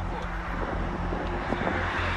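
Steady road-traffic rumble and wind noise picked up by a police body camera, with a vehicle noise swelling near the end.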